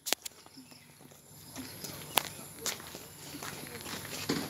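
Footsteps of someone walking on a path: a few sharp, irregular taps, the loudest just after the start and again about two seconds in.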